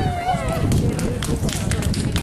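A person's voice calls out briefly at the start, then a string of irregular sharp clicks or taps follows, all over a steady low rumble.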